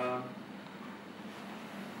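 A man's short "um", then the steady background noise of a crowded hall with a faint low hum.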